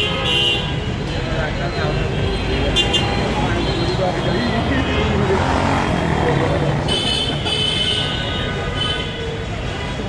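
Busy city street traffic, engines running with a steady rumble, and vehicle horns honking briefly at the start and again several times around seven to nine seconds in.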